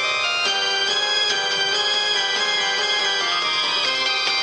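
Instrumental music: many bright, held notes changing every fraction of a second, at a steady loudness.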